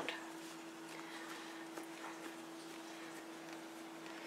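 Quiet room tone with a faint steady hum and a few soft, faint ticks.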